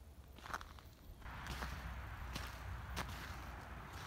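Faint footsteps of someone walking across a grass lawn: four soft steps roughly a second apart, over a faint hiss.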